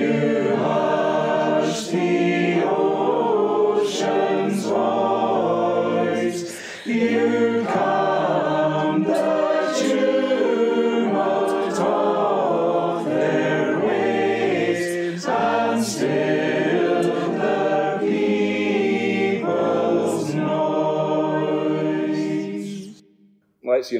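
A group of voices singing a metrical psalm unaccompanied, line by line, with a short pause between phrases about seven seconds in.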